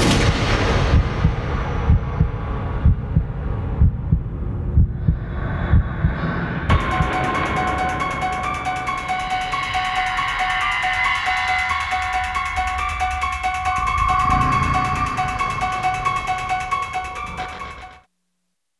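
Horror trailer score. Deep pounding hits come about twice a second, then about a third of the way in give way abruptly to a held, high theme of rapid repeated notes, which fades out at the end.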